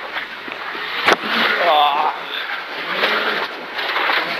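Rally car at speed on a wet gravel stage, heard from inside the cabin: steady engine and gravel road noise, with one sharp knock about a second in.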